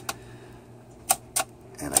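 Three sharp metallic clicks from the sliding metal sleeve of an RGF REME HALO air purifier cell being worked by hand, the two loudest close together about a second in. The sleeve is not quite formed right and sticks as it is slid.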